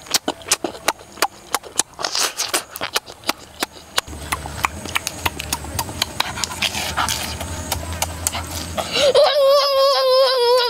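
Wet chewing and lip-smacking clicks of a boy eating cooked squid. About nine seconds in, he gives a long, high, wavering hum of delight.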